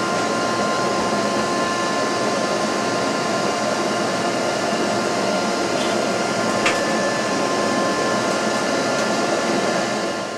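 Bee vacuum running steadily, a steady rush of suction air with a faint whine from its motor, as its hose sucks bees off a tray of honeycomb.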